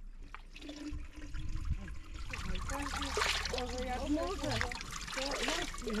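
Water running from a public drinking fountain, louder from about two seconds in.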